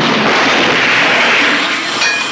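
A loud, steady rushing noise that starts suddenly and cuts off sharply after nearly three seconds.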